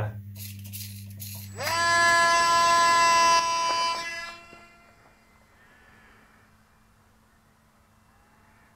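Small electric motor and propeller of a MinimumRC ASG-32 micro motor glider spinning up sharply to a steady high whine about a second and a half in, then fading away over about a second. Before it, a steady low hum.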